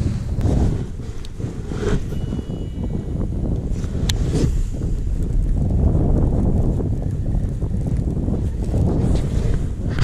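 Wind buffeting a camera microphone in a steady low rumble, with a couple of sharp clicks about four seconds in.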